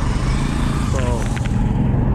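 Coach bus's diesel engine idling close by, a steady low rumble, with a short voice about a second in.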